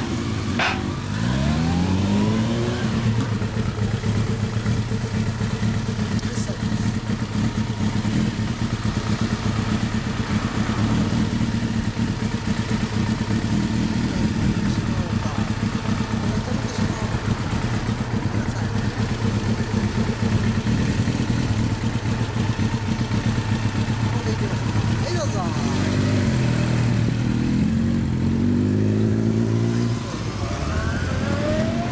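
Motorcycle engines idling steadily, revved up in the first couple of seconds and again near the end as the bikes accelerate and pull away, the pitch rising in repeated steps.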